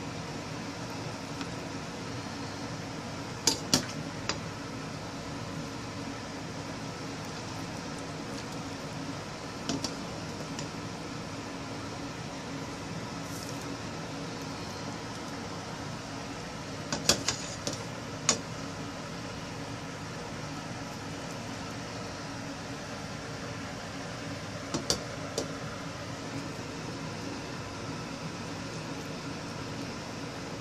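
Kitchen clatter over a steady hum: a few brief, sharp clicks of dishes or utensils knocking, in small groups about three seconds in, near the middle and again near the end.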